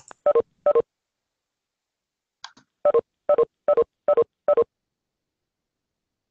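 Short electronic beeps from video-conferencing software, participants' leave chimes as the call breaks up. There are two beeps near the start, then a faint click, then a run of five beeps about 0.4 s apart from about three seconds in.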